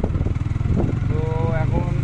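Engine of the vehicle being ridden, running steadily with a fast, even low pulse, heard from on board. A voice speaks briefly over it about a second in.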